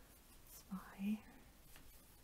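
A woman's voice softly saying a single short word about a second in: the count "zwei" between stitches while crocheting. Otherwise only a quiet room.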